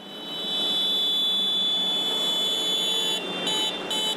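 A high-pitched horn held for about three seconds, then sounded as a string of short toots, over the steady noise of passing tractors.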